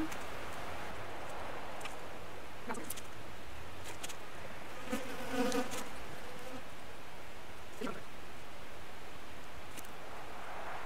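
Tape being pulled off the roll and wrapped around a plastic milk jug to seal it shut, a continuous noise with a few light knocks as the jug is handled.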